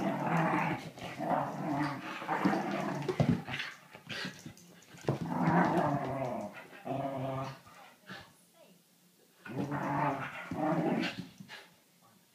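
Dogs play-growling as they wrestle, in long growls of a second or two at a time, with a lull about two-thirds of the way through.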